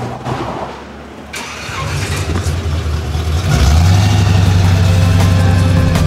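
A car engine starts about a second in and runs steadily, growing louder from about three and a half seconds, with music playing over it.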